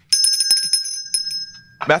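A bell rung several times in quick succession, with bright high ringing that fades out within about two seconds.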